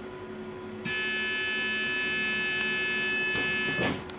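An electronic buzzer on a bus sounds one steady, unbroken tone for about three seconds and cuts off near the end, where there is a short low knock.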